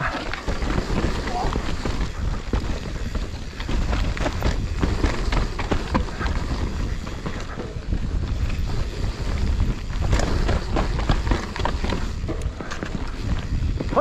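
Mountain bike descending a dirt singletrack: tyres rolling over soil and leaves, with frequent clicks and rattles from the bike over bumps, and wind buffeting the action-camera microphone.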